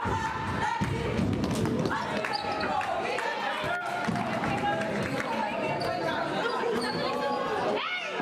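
Live game sound in a school gym: sneakers squeaking on the court, a basketball bouncing, and voices from the players and the crowd in the echoing hall.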